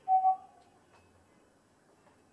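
Whiteboard eraser squeaking against the board: one short, steady squeak in the first half-second.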